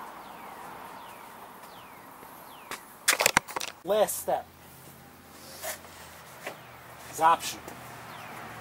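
A quick cluster of sharp clicks and knocks from handling a little after three seconds in, then brief vocal sounds from a person around four seconds and again near seven seconds.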